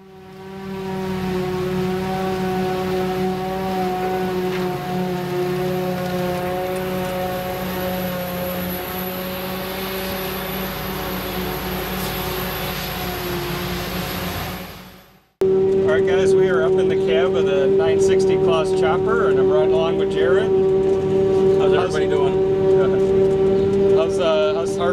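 Claas Jaguar 960 self-propelled forage harvester running under load while chopping hay, with a steady whine over its engine drone. About fifteen seconds in the sound breaks off abruptly and a louder steady drone at the same pitch follows.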